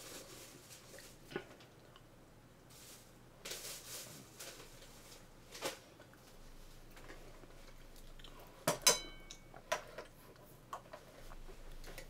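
Scattered light clinks and knocks of a drinking glass and tableware being handled, the loudest a clink about nine seconds in with a brief ring.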